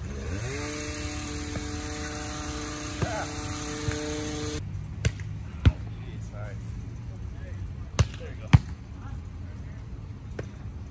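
A volleyball being struck back and forth between two players, giving sharp smacks of hands and forearms on the ball, about six of them, some in quick pairs. Under the first half runs a steady machine hum with a hiss above it that rises in pitch as it starts and cuts off suddenly a little before halfway.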